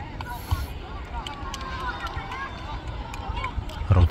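Distant voices of players and onlookers calling out across a football pitch, over a low rumble of wind on the microphone, with scattered faint knocks and a louder thump at the very end.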